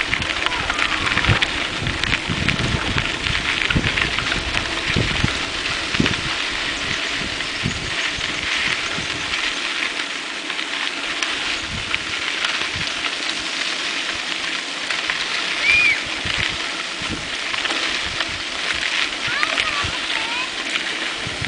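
Wind on the microphone and the rumble of mountain bike tyres rolling over a rough dirt road while riding, with irregular low jolts in the first half.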